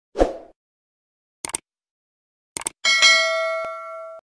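Subscribe-button animation sound effects: a short pop near the start, two mouse clicks about a second apart, then a notification bell ding that rings on and slowly fades.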